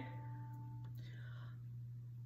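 A quiet pause between sung phrases: a steady low electrical hum, with a single held MIDI piano note that stops about a second in.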